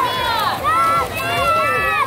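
Spectators at a swim race shouting and cheering swimmers on, several high-pitched voices calling out over one another without a pause.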